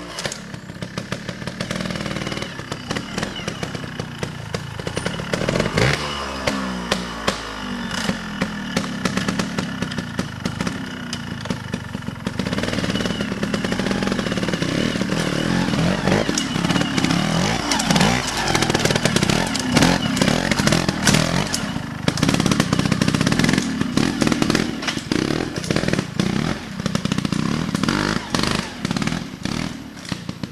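Trial motorcycle engine being blipped and revved in repeated short bursts, the pitch rising and falling as the bike is ridden through a section, with louder, longer stretches of throttle in the second half.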